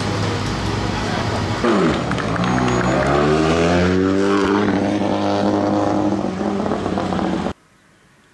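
Renault Clio Rally3 Evo rally car engine revving. It rises in pitch over a couple of seconds, then holds steady, and cuts off suddenly near the end.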